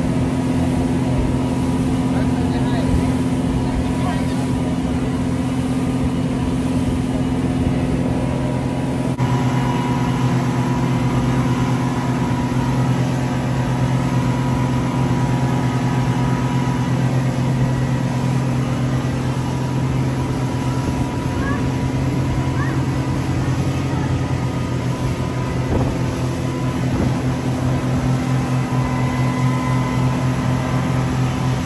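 Motorboat engines running steadily at cruising speed, a constant low drone over the rush of water and wake along the hull.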